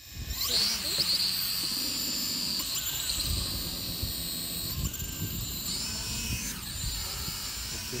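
Hubsan H216A quadcopter's small electric motors and propellers whirring as it lifts off and hovers. It is a high-pitched whine that rises in pitch shortly after the start and then wavers up and down as the throttle changes, over a low wind rumble on the microphone.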